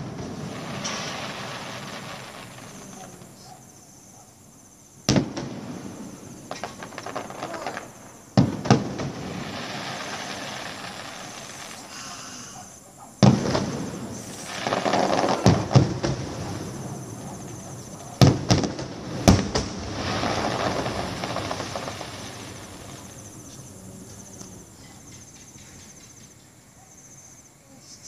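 Aerial firework shells bursting: about seven sharp bangs, spaced out at first and then several close together in the middle. Each bang is followed by a long crackling tail that slowly fades.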